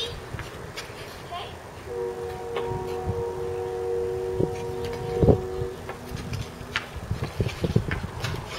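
Hockey sticks tapping on the ice and hitting a puck: scattered knocks, one sharp crack a little past halfway, and a quick run of clacks near the end. A steady two-note hum sounds underneath for much of the time.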